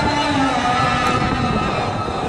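A crowd of voices chanting together in long, held tones that fall away slowly.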